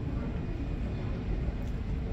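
Steady low rumble of airport apron noise from aircraft and ground-service engines running, with a faint whine above it.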